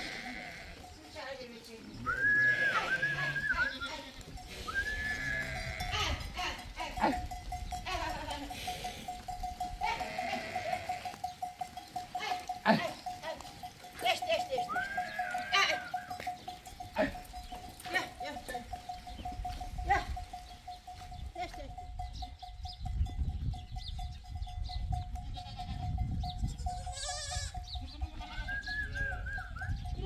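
A flock of sheep and goats bleating, with repeated cries from several animals, as the flock is herded along.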